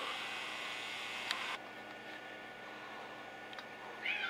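Faint steady hiss of room tone that drops a little about one and a half seconds in, with a couple of faint ticks.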